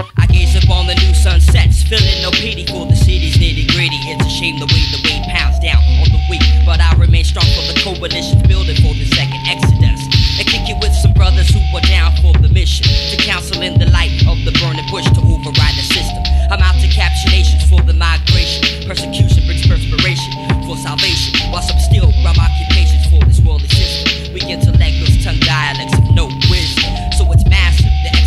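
Underground hip hop track from a 1998 cassette, starting abruptly: a looped beat with a deep bass line recurring about every four seconds, drum hits and a short repeating melodic phrase, with rapping over it.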